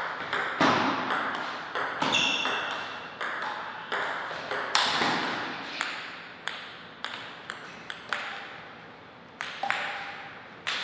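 Table tennis rally: a celluloid-type ball clicking off the rubber bats and the tabletop about twice a second, each click ringing briefly in the hall. After the point ends the ball bounces on the floor, its bounces coming quicker and fainter as it settles.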